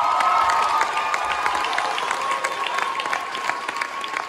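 Theatre audience clapping, with one voice holding a long, high cheer over the applause.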